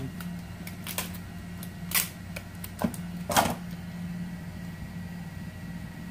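Packing tape being handled at a handheld dispenser: a few sharp clicks and a short rasping burst of tape pulling off the roll about three and a half seconds in, over a steady low hum.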